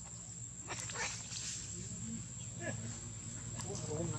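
Outdoor ambience around a macaque walking on dry leaf litter: a few crackly rustles about a second in, short animal calls later on, and what sounds like a murmur of voices. A steady high whine and a low hum run underneath.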